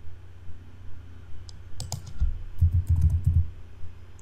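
A short run of keystrokes on a computer keyboard, typing the word "foot" into a search box. The keys start about a third of the way in and come quickly for about two seconds.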